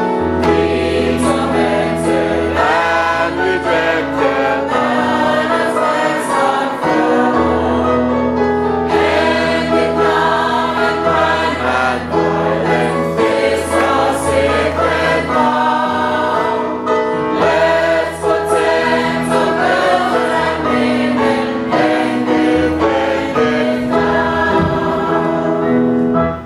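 A small choir singing a gospel hymn with instrumental accompaniment, over a bass line held in long notes that change every few seconds.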